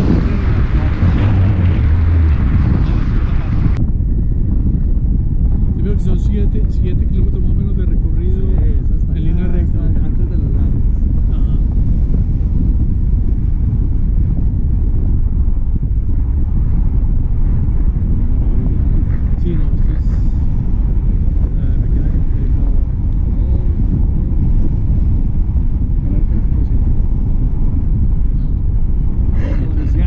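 Wind buffeting a camera microphone in paragliding flight: a loud, steady low rumble, with added hiss for about the first four seconds that then cuts off.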